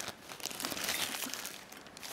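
Thin compostable plastic bag crinkling as hands turn the stainless steel water flask inside it: an irregular run of soft rustles and crackles.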